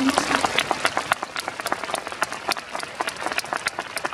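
Audience applauding: many hands clapping in a quick, irregular patter.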